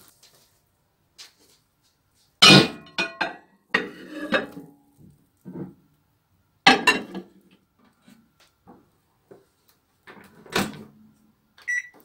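Clinks and clunks of a glass bowl being set into a microwave oven and the microwave door being shut, with three loudest knocks about two and a half, seven and ten and a half seconds in. A short high beep from the microwave's controls near the end.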